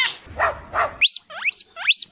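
An animal's calls: two short breathy noises, then four high-pitched squeals in quick succession, each rising sharply in pitch.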